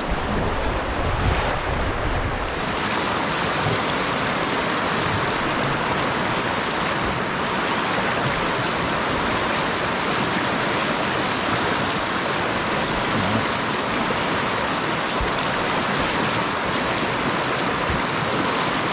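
Whitewater river rapids rushing steadily around a kayak, a continuous hiss of churning water that grows fuller about two seconds in. Wind rumbles on the microphone in the first couple of seconds.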